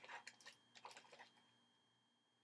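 Faint rustling and light clicks of fingers handling a clump of shed human hair close to the microphone, dying away after about a second and a half.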